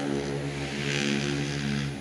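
A motor vehicle engine running with a steady low hum, and a rushing noise that swells and fades around the middle.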